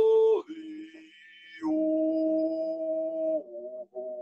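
A man singing a traditional Coast Salish greeting song to the day in long, held vocable notes, with no drumming. A held note ends about half a second in; after a quieter stretch, another long note is held for nearly two seconds, then shorter notes follow near the end.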